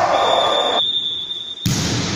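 Referee's whistle blown once, a single steady high tone lasting about a second and a half, over players' shouts in a reverberant sports hall. Midway the hall sound cuts out while the whistle holds, then returns suddenly near the end.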